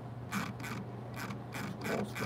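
Computer mouse scroll wheel ratcheting in short runs of clicks, one run about half a second in and another near the end, over a steady low electrical hum.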